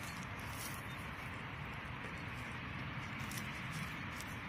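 Gloved hand scraping and sifting through loose, crumbly soil in a dig hole, with a few faint scratches over a steady low outdoor rumble.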